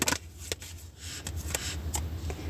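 Tarot cards being handled and laid out: a few soft clicks and rustles of card stock, over a steady low hum.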